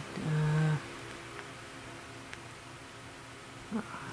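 A man humming one short, steady note near the start, then quiet room tone until a brief "uh" at the very end.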